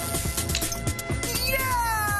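Animated-film soundtrack music with a quick beat; about one and a half seconds in, a long, slowly falling high cry starts over it.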